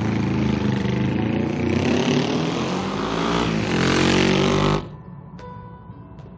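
Motorcycle engine under hard acceleration, its pitch climbing through the gears over a couple of seconds, then cut off abruptly about five seconds in.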